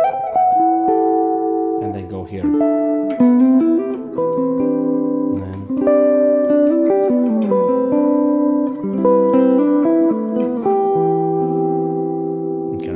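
Clean-toned semi-hollow electric jazz guitar playing a slow chain of chord voicings. Each chord begins with a held top note, and the rest of the chord is then plucked in note by note beneath it, moving down the neck.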